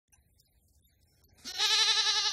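Silence, then about one and a half seconds in a single high, quavering cry starts and holds, with a fast, even wobble in its pitch.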